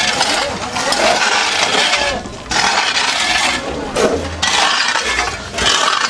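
Metal hoes scraping dirt and gravel off concrete and asphalt in repeated strokes, with clinks of stones against the blades.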